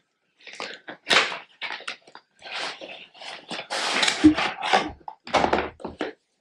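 Cardboard watch packaging being handled: a white card sleeve slid off a kraft cardboard box, in a run of irregular scraping and rustling strokes.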